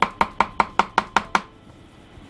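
Kitchen knife rapidly chopping whole natto beans on a wooden cutting board, about five even strokes a second. The chopping stops about one and a half seconds in.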